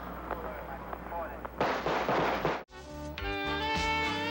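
A dense volley of gunfire lasting about a second, cut off abruptly, followed straight away by music with plucked electric guitar.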